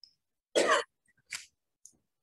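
A person coughing: one loud, short cough about half a second in, then a shorter, fainter sound just under a second later.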